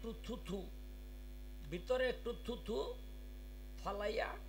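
Steady electrical mains hum from a stage microphone and sound system, under two short bursts of a man's voice at the microphone, one at the start and one about two seconds in.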